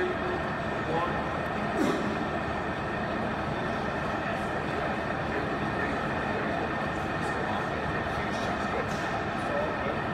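Steady gym room noise, a constant rumble and hiss with faint, indistinct voices, and a light knock about two seconds in.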